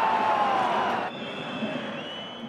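Stadium crowd noise, a loud wash of many voices with some held calls, dropping to a quieter background hum about a second in.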